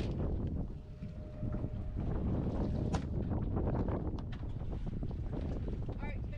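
Wind buffeting the microphone on an open boat at sea: a steady, uneven rumble, with a few light clicks and knocks, one sharper about halfway through.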